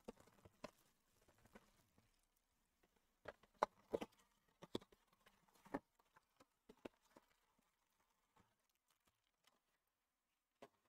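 Faint, scattered clicks and taps of a cardboard trading-card box being handled and opened on a tabletop and its packs pulled out, busiest in the middle of the stretch.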